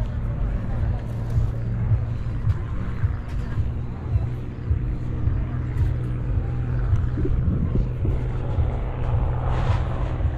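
Wind buffeting the camera microphone, a steady low rumble, with faint voices of people nearby.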